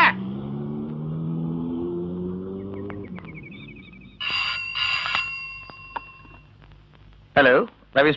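A low hum rising slowly in pitch for about three seconds, then a bell rings twice about four seconds in, each ring fading away over a second or two.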